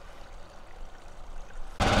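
A faint, even outdoor background, then about two seconds in a sudden cut to a vehicle engine running steadily, heard from inside the truck's cab.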